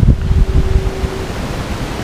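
Wind buffeting the microphone: a loud low rumble that gusts through the first second and then settles to a steadier rush. A faint steady hum runs under it and stops a little over a second in.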